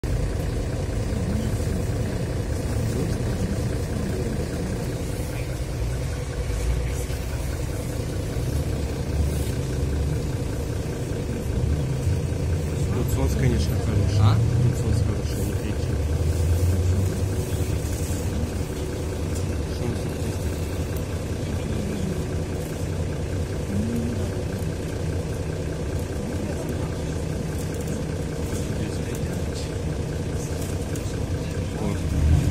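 Mercedes-Benz O530 Citaro city bus heard from inside the passenger cabin: a steady low engine and road rumble that swells louder for a few seconds around the middle.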